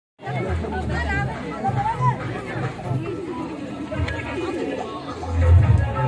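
Crowd chatter, many voices talking at once, over music with a bass beat that swells louder near the end.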